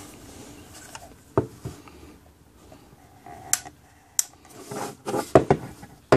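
Handling noise from a small plastic ionic air purifier case turned over in the hands, with scattered light clicks and knocks, then a quick run of taps about five seconds in as it is set down on a wooden bench.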